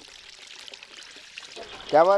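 Grey drain wastewater pouring from an outlet in an earthen bank and splashing steadily into a pool of standing water below. A man's voice starts near the end.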